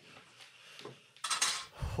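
Dishes and cutlery clinking and clattering, faint at first, with a louder clatter a little past halfway.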